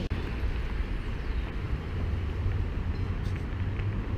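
City street noise: a steady low rumble of traffic.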